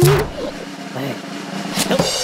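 A cartoon bunny character's short, wordless vocal sounds, rising and falling in pitch. A sharp noise sounds at the start and another near the end.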